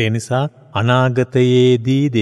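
A Buddhist monk's male voice chanting in an intoned, steady-pitched recitation, with short phrases and one long held note about halfway through.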